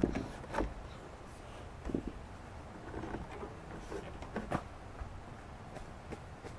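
Knocks and thumps of a person climbing over a wooden railing and jumping down: four or five sharp knocks spread out, the loudest at the start.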